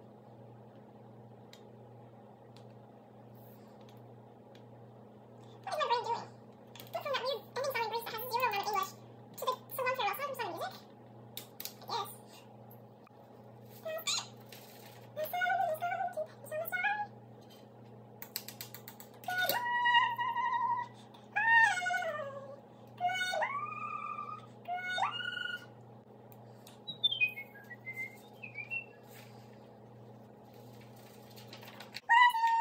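A cat meowing over and over, a string of short calls that rise and fall in pitch, heard over a steady low hum.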